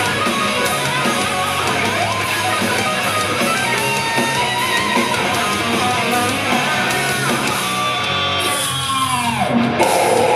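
A thrash metal band playing loud live, with distorted electric guitar to the fore over fast drums. Near the end the cymbals drop out and a note slides steeply down in pitch, and then the band crashes back in.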